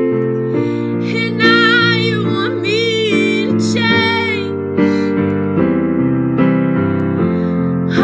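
A teenage girl singing a slow pop ballad over keyboard accompaniment, her held notes wavering in vibrato.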